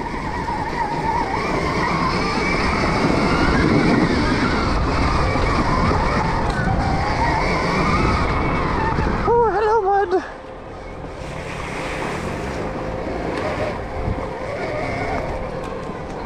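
Stark Varg electric dirt bike being ridden on a trail: the electric motor's whine rises and falls with the throttle over a continuous rush of tyre, chain and wind noise. A short vocal exclamation about nine seconds in, and the riding noise gets quieter from about ten seconds in.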